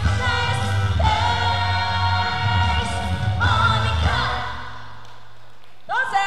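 A woman sings an upbeat pop song live through a microphone over a backing track with a heavy bass line, holding long notes with vibrato. Her voice stops about four seconds in, and the backing track ends a second or two later as the song finishes.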